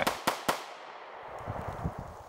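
Three sharp metallic clicks in quick succession from a compact pistol being handled, followed by a faint hiss.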